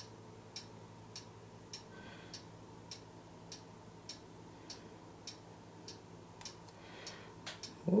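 Faint, even ticking, a little under two ticks a second, over a low steady hum.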